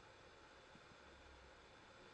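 Near silence: faint room tone from the recording, a pause in the narration.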